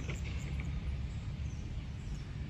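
Steady outdoor background: a low, even rumble with a faint hiss above it, and no distinct calls or events.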